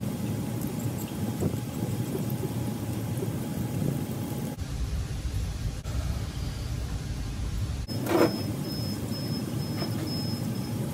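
Steady low rumbling background noise from a running machine, with one short knock near the end.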